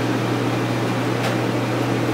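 Steady low hum over a constant background of room noise, in a pause between speakers.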